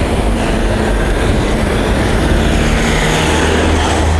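Steady rumble of road traffic, with a motor vehicle's engine growing louder near the end.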